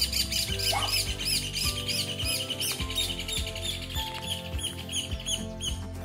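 A songbird singing a long, rapid run of evenly repeated high notes, over steady background music.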